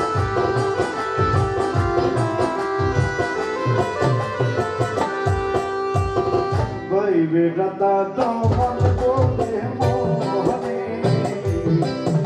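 Live Bengali folk band music: a barrel-shaped hand drum keeps a steady beat under a keyboard melody and bass guitar. About halfway through, the drumming thins for a moment while a wavering, gliding melodic line comes forward, then the beat returns.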